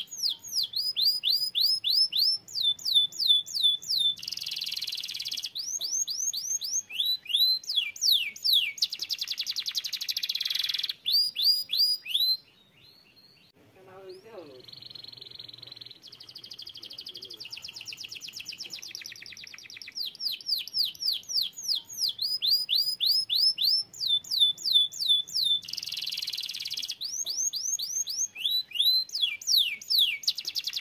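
Domestic canary singing: phrases of quick downward-sweeping whistles repeated several times each, alternating with fast buzzing trills. The song breaks off about twelve seconds in, comes back softer, then loud again for the last ten seconds.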